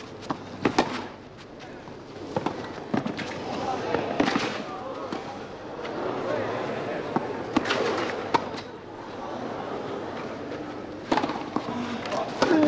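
Tennis rally: racquets strike the ball in sharp pops, a second or a few seconds apart, over background chatter from spectators.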